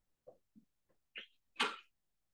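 A few short, faint breathy noises, the loudest about one and a half seconds in.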